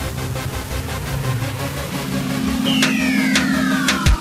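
Electronic background music in a build-up: a held low synth note, then a falling whistle-like pitch sweep and quickening sharp hits in the last second or so, leading into a drop.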